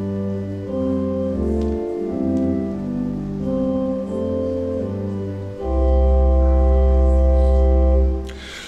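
Organ playing slow, sustained chords that change about once a second; a little past halfway a deep bass chord comes in, louder, and is held for over two seconds.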